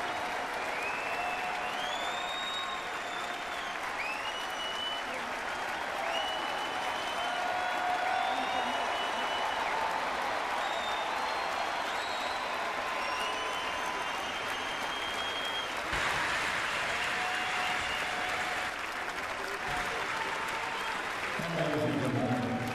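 Large ballpark crowd applauding steadily, with many single voices calling out over the clapping. The applause swells briefly about sixteen seconds in.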